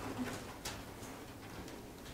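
Quiet pause in a room: a steady low hum, a couple of faint clicks and a brief soft low sound about a quarter second in.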